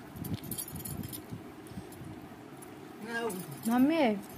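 Light metallic jingling and clinks of bangles as hands mix rice in steel bowls, faint in the first second. Near the end a voice makes two short sounds with rising and falling pitch, louder than the clinking.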